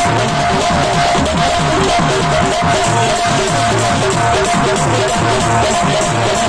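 Loud stage music for a Tamil village folk song: electronic keyboard with a fast, steady beat and a moving bass line, no singing.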